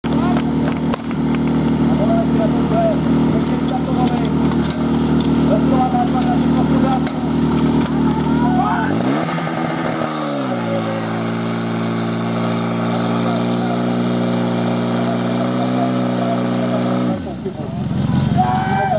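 Portable fire pump's small petrol engine running steadily, then revved hard about nine seconds in and held at full throttle while it pumps water through the hose lines, dropping away abruptly near the end. People shout over the engine in the first half.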